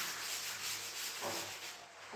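A blackboard being wiped by hand, a steady rough rubbing that fades out near the end.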